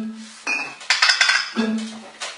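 Glass beer bottles struck in turn, sounding a short run of about four ringing notes of a Christmas melody.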